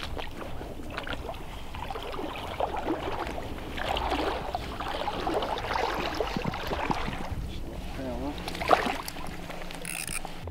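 Water splashing and churning as a small jack pike, hooked on a float-fished dead bait, thrashes at the surface while it is played in toward the landing net; the splashing is heaviest in the middle. A low wind rumble runs under it.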